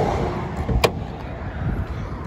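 An Audi TTS's hood being lifted open: one sharp click a little under a second in, over a low rumble of handling noise.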